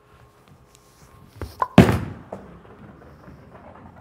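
A Radical Hitter Pearl bowling ball released onto the lane: a couple of light knocks, then one loud thud about two seconds in as the ball lands, followed by a quieter low noise as it rolls away.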